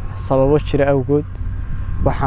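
A young man speaking Somali, a short phrase then a pause, over a steady low rumble on the clip-on microphone.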